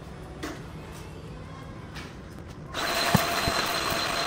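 Electric vacuum cleaner switched on near the end, its motor coming straight up to a steady whine over a rushing of air. Before it, a few faint clicks and knocks as the vacuum and its cord are handled.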